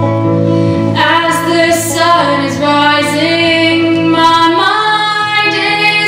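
A woman singing live over an electric guitar. The guitar chords sound alone for about the first second, then her voice comes in with long, gliding held notes.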